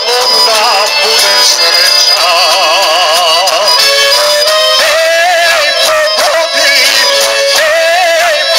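Live Serbian folk music from a band with violins and drums, a male voice singing long, wavering notes over it.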